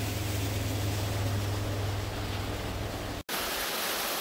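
A steady hiss with a low hum underneath, broken by a sudden dropout about three seconds in, after which the even rush of a small waterfall splashing over rocks takes over.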